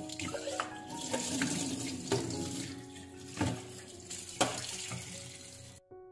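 Tap water running into a stainless steel sink as a glass teapot is rinsed under it by hand, with a few knocks as it is handled. The water stops suddenly near the end.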